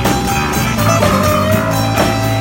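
Live acoustic rock band music on acoustic guitars, a 12-string among them, strummed steadily while a melody of long held notes that bend in pitch plays over the top.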